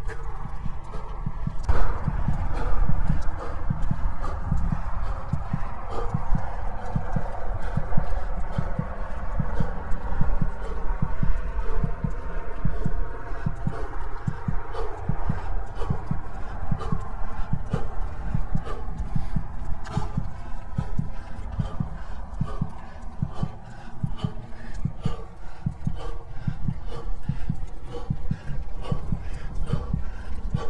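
A cyclist's hard, heavy breathing while pedalling uphill, picked up close by a chest-worn lavalier mic, over a steady low rumble of wind on the microphone. Irregular clicks and knocks from the bike come through.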